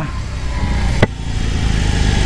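BMW R18 bagger's 1.8-litre boxer twin running as the bike rolls along at low speed, heard from the rider's seat as a steady low rumble. There is a single sharp click about a second in.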